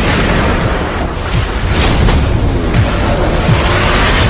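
Loud, bass-heavy intro music layered with booming, explosion-like impact sound effects.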